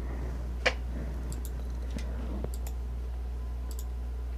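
A sharp computer-mouse click about half a second in, then several fainter clicks, over a steady low electrical hum.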